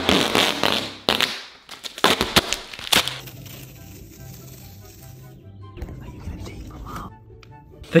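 Duct tape pulled off the roll in several loud, crackling rips over the first three seconds. After that, a quieter music track plays.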